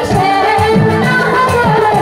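A woman singing a Bengali Bhawaiya folk song into a microphone, her melody sliding and bending, over instrumental accompaniment with repeated low notes.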